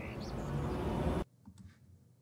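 Forest ambience sound design: wind rushing through trees with a faint bird chirp, and a riser swelling steadily louder under it. It cuts off abruptly about a second and a quarter in.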